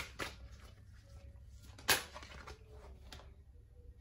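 Oracle cards being handled as one card is drawn from the deck: faint rustles and light clicks, with one sharp click about two seconds in.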